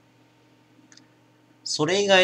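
Near silence: room tone with a faint steady hum and one faint click about a second in, then a voice starting near the end.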